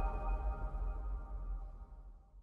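Tail of a logo-reveal music sting: several held electronic tones, one of them high and ringing, fading steadily away.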